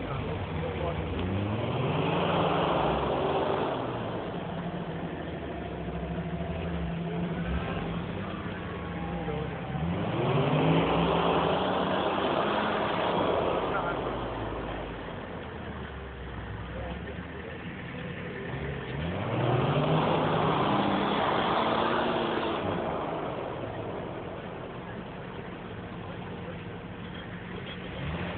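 Jeep engine revving hard three times as it tries to climb a snow bank, each surge rising in pitch with a hiss of tires spinning in snow, and dropping back to a steady idle between attempts.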